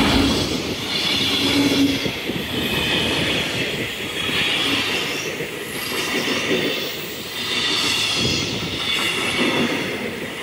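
Freight train of empty bogie flat wagons passing close by over a level crossing: a continuous rumble and clatter of steel wheels on the rails, with a high metallic ringing from the wheels that swells and fades every couple of seconds.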